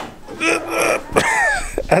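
A man's strained grunts and a falling groan of effort while lifting a heavy suspension knuckle with its brake rotor one-handed. There are a few low handling thumps, and the start of a word comes right at the end.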